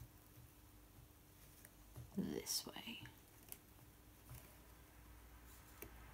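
Mostly quiet room with a faint steady hum. About two seconds in there is a brief whispered murmur, and after it a few faint light clicks from hands handling the loom.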